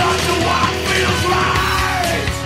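Gothic metal recording: a held, wavering vocal melody over distorted guitars and drums.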